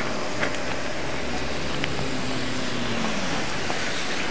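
Steady noise of a rain-soaked street, with a car driving past close by near the end; its engine hum drops slightly in pitch as it goes by.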